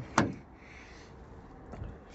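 A single sharp click shortly after the start, the latch of a Volvo FH truck's cab door being released, followed by faint low handling noise and a few soft knocks as the door is swung open.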